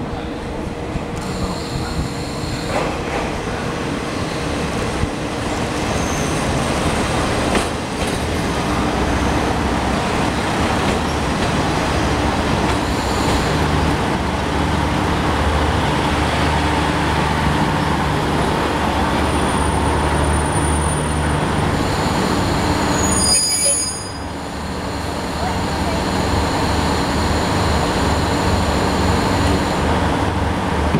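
Diesel railcar train pulling slowly into a station platform: its engines running and wheels rolling, getting louder as the cars draw alongside. High thin squeals, typical of brakes, come in a few seconds before a short drop in the noise about three-quarters of the way through.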